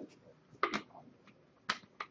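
A few short, sharp clicks in a quiet room: a quick pair, then a single crisp click about a second later.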